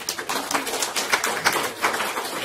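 Small audience applauding, with many irregular, overlapping hand claps.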